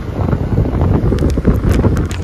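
Wind buffeting the microphone on a moving motorcycle, a rough, steady rumble.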